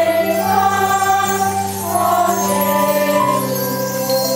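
A children's choir and recorder orchestra performing a Christmas piece: several young voices singing held notes over steady low accompaniment notes.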